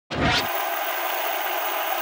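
Television-static hiss sound effect in a logo intro, cutting in suddenly with a brief low rumble in the first half second, then a steady, loud hiss.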